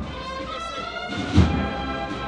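Processional band music: held brass chords over a slow bass drum beat, with one heavy drum stroke about one and a half seconds in.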